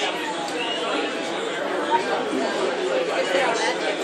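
Many people talking at once: steady background chatter with no single voice standing out.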